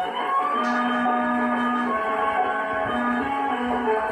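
Instrumental music playing from a vinyl record on a turntable: a melody of long held notes, with little treble.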